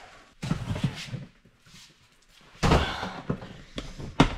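Clothes rustling as they are pulled around inside a plastic storage tote, then a single loud thump about two and a half seconds in as a plastic tote lid is handled.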